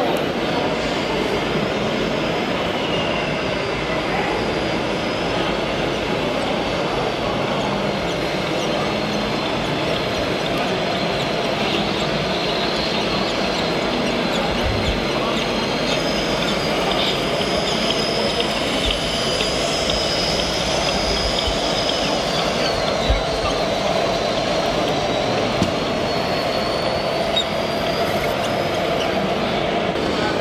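Steady running noise of radio-controlled model trucks over the hum of a busy exhibition hall, with a thin high whine that comes in about halfway through and dips in pitch briefly.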